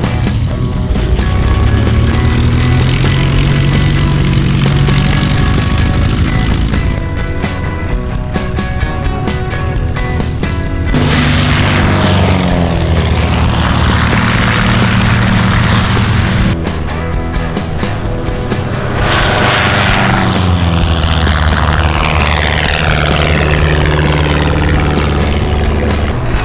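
Background music with a propeller plane passing low overhead twice: its engine noise swells in about eleven seconds in and fades a few seconds later, then swells again near the end with a sweeping, phasing whoosh as it goes by.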